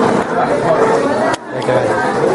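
Many students chattering at once, a steady babble of overlapping voices, with a brief dip in level about one and a half seconds in.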